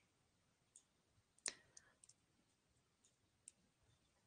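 Near silence with a few faint, short clicks scattered through it, the clearest about a second and a half in.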